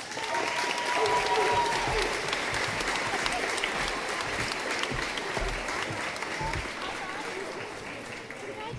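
Audience applause that starts at once, is loudest about one to two seconds in, and slowly eases off, with a held call from a voice in the first two seconds.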